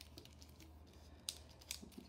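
Faint crinkling of a clear plastic die-set package being handled, with a couple of brief, sharper crackles in the second half.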